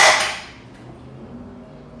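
A sudden loud burst of noise at the start, fading away over about half a second, then faint room sound.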